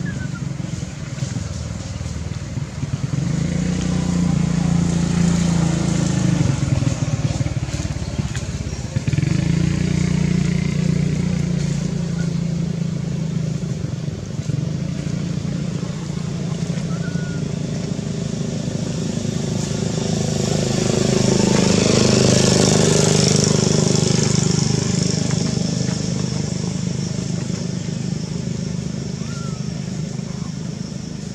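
A steady low engine hum of motor traffic, swelling to a louder rush about twenty seconds in as a vehicle passes, then fading.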